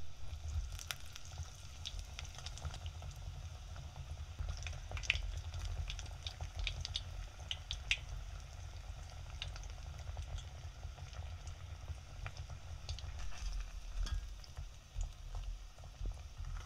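Breaded cheese pork cutlets deep-frying in hot oil in a stainless steel pot: a steady sizzle with many small crackles and pops, over a low steady hum.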